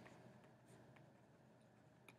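Faint handwriting with a stylus on a pen tablet: soft strokes and a few light taps, close to silence.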